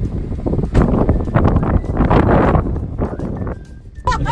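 Wind buffeting the microphone in uneven gusts, easing off near the end.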